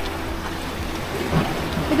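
Small waves washing onto a sandy lagoon beach: a steady rushing noise, with some wind on the microphone.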